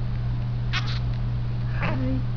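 Newborn baby making small squeaks: two quick breathy squeaks about a second in, then a short rising squeak near the end, over a steady low hum.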